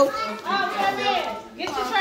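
Voices talking over one another indoors, a child's voice among them, with a short lull about three-quarters of a second from the end.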